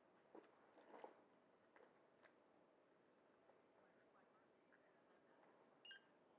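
Near silence with a few faint handling clicks as a LiPo battery lead is handled, then a short electronic beep near the end as a Spektrum XBC100 battery checker powers up on the pack.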